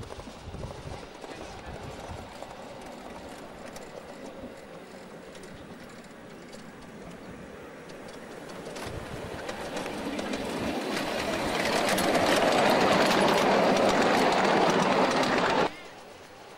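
Miniature ride-on railway train running on small-gauge track, its wheels clattering over the rails with many sharp clicks, growing steadily louder as it comes close. The sound cuts off suddenly near the end.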